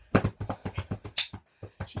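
Drumsticks beating hard and fast, an irregular flurry of about seven or eight strikes a second, with one brighter, higher crack a little past the middle.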